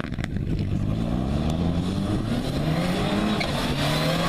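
Fiat Punto rally car's engine accelerating hard on a gravel stage as it approaches. The revs climb, drop at a gear change about two and a half seconds in, and climb again.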